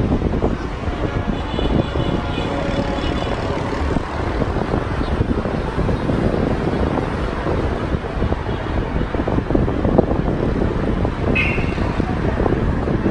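Steady city traffic noise rising from the streets below, with wind buffeting the microphone. A brief high-pitched tone sounds near the end.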